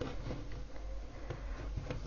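Faint rustling of a linen ribbon being folded and pressed into a crease by hand on a table mat, with a couple of small ticks.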